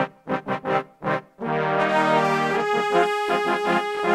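Sampled brass section (Session Horns Pro in Kontakt: bass trombone, tenor trombone and two trumpets) playing dry, with no effects: about four short stabs, then a held chord that shifts to new notes about halfway through.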